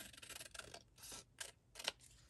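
Scissors snipping through a paper card, trimming a thin strip off its edge: a series of quiet, sharp snips, about five in two seconds.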